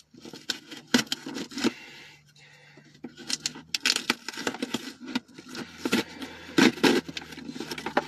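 A car key scraping and slitting the tape on a package, with irregular scratches, clicks and crinkles, over a faint steady low hum.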